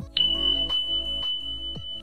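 An electronic sound effect: one long, steady, high beep that starts with a quick downward slide and then holds, over background music with a regular beat.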